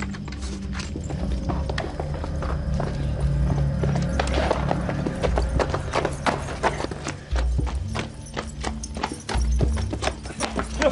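Rapid horse hoofbeats, many sharp hits in quick succession, over a film score with sustained low notes.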